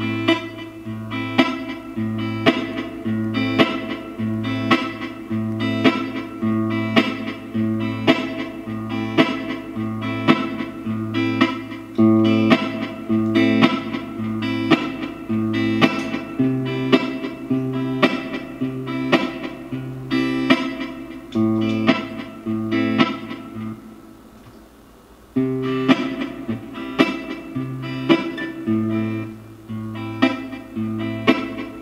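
Yamaha APX600 acoustic-electric guitar played through an amp with a looper: strummed chords in a steady repeating rhythm over a looped low note line. Late on the playing stops for about a second, then the pattern starts again.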